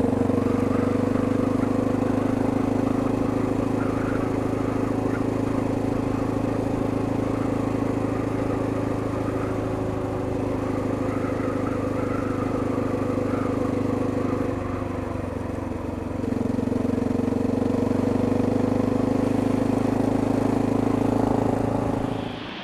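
Motorcycle engine running at a steady cruise while riding down a wet road, easing off briefly about two-thirds of the way in, then pulling steadily again.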